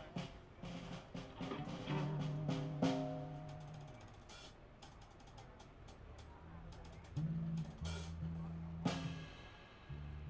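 Live band of drum kit, electric bass and electric guitar playing, with scattered drum strikes. Held bass notes sound about two seconds in and again near the end.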